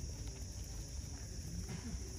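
Rabbits munching fresh grass: small irregular crunching ticks, over a steady high hiss and a low rumble.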